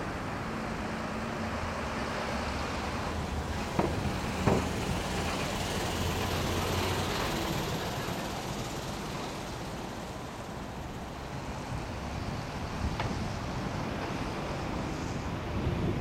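Steady outdoor background noise of wind on the microphone and distant traffic. Two sharp knocks come about four seconds in, and a fainter one near thirteen seconds.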